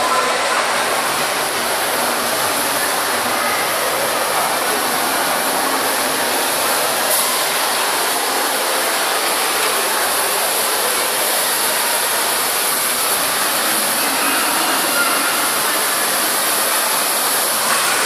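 Steady, loud rushing background noise of a shopping mall's indoor space, even throughout.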